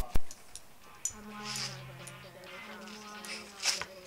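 A low buzzing hum that comes and goes in stretches, with scattered clicks and a loud pop just after the start.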